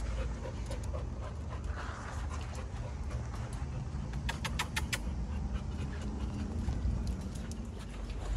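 A dog panting over a steady low rumble, with a quick run of about five sharp clicks a little past halfway.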